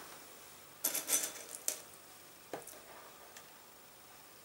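A short clatter of small hard clicks about a second in, then a couple of single light clicks: dry pasta pieces knocking together as they are handled.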